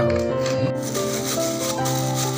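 Background music with held, sustained notes. From just under a second in, a soft rustling scrape joins it: a plastic scoop pressing and smoothing mashed cassava into a plastic tray.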